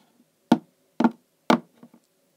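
Hard plastic toy pony figures knocked against a hard shelf as they are walked along: three sharp knocks about half a second apart.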